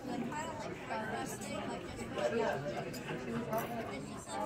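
Chatter of many diners talking at once in a restaurant dining room, with a few light clicks.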